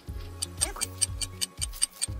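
Fast, regular clock-like ticking, about five ticks a second, starting about half a second in, over soft background music.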